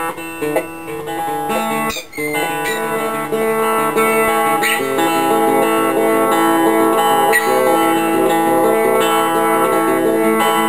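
Four-string cigar box guitar built from a toilet seat, with a magnetic P-bass pickup, played fingerstyle without slide through an amplifier with a clean tone, the notes ringing into one another. The playing gets louder about four seconds in.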